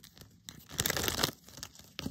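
Deck of tarot cards shuffled by hand: a dense flurry of rapid card flicks lasting under a second in the middle, with a few lighter card clicks before and after.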